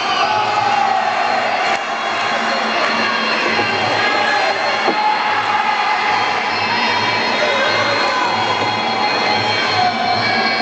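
Spectators in a hall shouting and cheering at a Muay Thai bout, a continuous mix of many voices.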